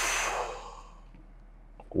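A person's long breathy sigh, trailing off over the first half-second or so, then quiet room tone.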